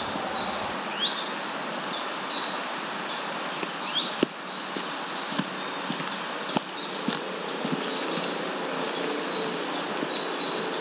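Outdoor ambience: a steady insect buzz with short high chirps scattered through it and a few faint clicks.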